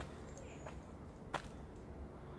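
Quiet outdoor background with a few faint clicks and one sharp snap about a second and a half in.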